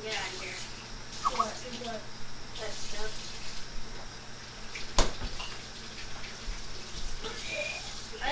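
Water running from a kitchen tap into the sink, a steady hiss, with faint indistinct voices and one sharp knock about five seconds in.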